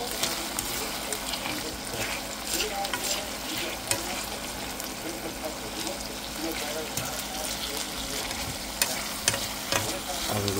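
Flaked salt fish with onion and sweet pepper sizzling in oil in a frying pan, while a fork stirs it, clicking and scraping against the pan now and then.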